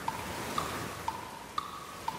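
Cartoon rain sound effect, a steady hiss of rainfall, under a soft instrumental interlude of short high notes about twice a second, alternating between two pitches.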